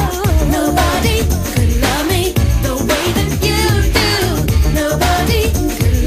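A 1990s new jack swing R&B song: a lead vocal sings over a steady, punchy beat and heavy bass.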